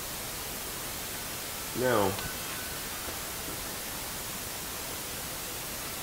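Steady, even hiss, with one short spoken word about two seconds in.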